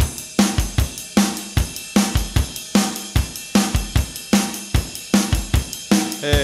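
Rock drum kit playing a song intro on its own, starting abruptly out of silence: kick drum, a steady snare backbeat about every 0.8 s, and hi-hat and cymbals.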